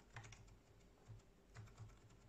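Near silence from a freshly built desktop PC running: its fans give only a faint steady hum, described as almost inaudible. A scatter of faint short clicks comes in small clusters over it.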